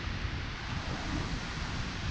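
Wind buffeting the microphone: a steady, unpitched noise, heaviest in the low end.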